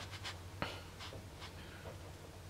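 Faint scratching and rustling of a ballpoint pen on sketchbook paper as drawing begins.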